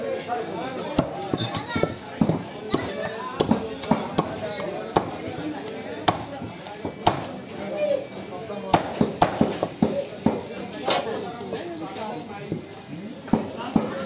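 A large curved knife chopping a flathead fish into steaks on a wooden chopping block: a series of irregular sharp knocks as the blade cuts through and strikes the wood, about one a second with some quick clusters, over background voices.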